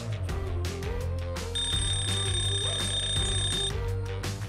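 An Eilik desktop robot's countdown-timer alarm rings as steady, high electronic tones for about two seconds in the middle, over background music.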